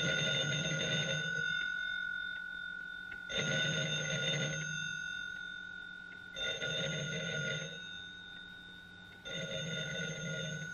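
Old black desk telephone's bell ringing in a repeating pattern: four rings, each about a second and a half long and about three seconds apart, with the last cut off at the end. A faint steady high tone runs underneath.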